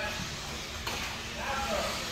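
Steady hiss of RC race cars running on an indoor dirt track, heard as a general track din with no distinct engine note, and a faint voice in the background about a second and a half in.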